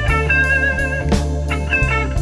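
Modern electric blues band recording: a lead electric guitar holds a long bent note with a wavering vibrato over a steady bass line and drum kit, with no singing.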